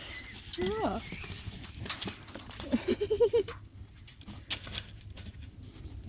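A woman laughing: a short voiced sound about half a second in, then a quick run of laughing pulses around three seconds in. Scattered light clicks and rustles come in between.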